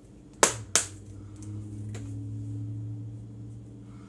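Two sharp clicks about a third of a second apart, then a steady low hum.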